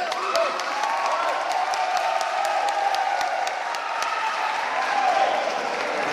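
Audience applauding, a dense patter of claps throughout, with voices talking over it.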